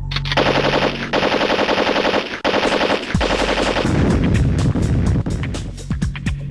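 Rapid automatic gunfire, a machine-gun sound effect in several long bursts with short breaks, over background music.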